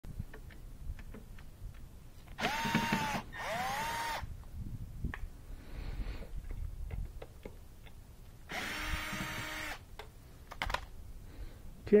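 Cordless drill-driver backing out screws from the base of a Miele dishwasher, in three short bursts: two close together, then one more a few seconds later. Each burst rises in pitch as the motor spins up and then holds steady. Small clicks of the bit and screws come between the bursts.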